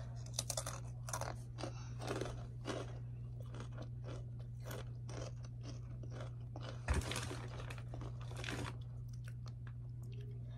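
Crunching and chewing of a blue Takis rolled tortilla chip: quick, dense crunches over the first few seconds, then slower chewing with louder crunches about seven and eight and a half seconds in.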